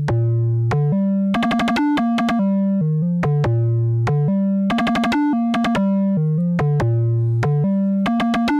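Modular synthesizer sequence: a held bass line stepping between notes, with quick ratcheted bursts of short, sharp-attack pinged notes from the BRENSO oscillator, triggered by the USTA sequencer's ratcheting gates. The pattern loops about every three and a half seconds.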